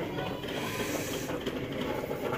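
Shop background noise: a steady, even hum with no distinct events.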